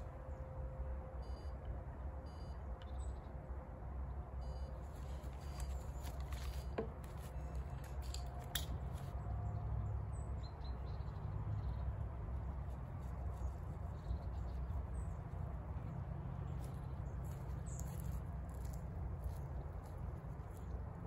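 Quiet open-air ambience: a steady low rumble with faint, scattered bird chirps, and a few small clicks and knocks near the middle.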